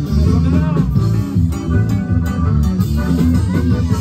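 Live band music played loud: a prominent electric bass line with guitar and drums.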